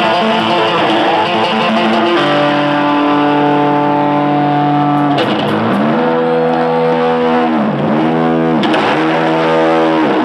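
Heavily distorted electric guitar played solo live: a long held note, then three or four times the pitch dips sharply and springs back up.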